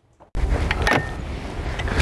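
A metal hive tool prying at the seam between two wooden beehive boxes that bees have glued together with propolis, with a few short cracks and scrapes over a steady low rumble.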